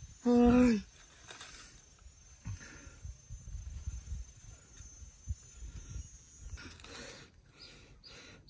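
A single spoken word at the start, then faint outdoor ambience: an irregular low rumble with soft knocks, and a brief rustle near the end.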